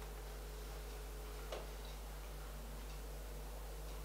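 Quiet room tone: a steady low hum, with one faint short click about a second and a half in.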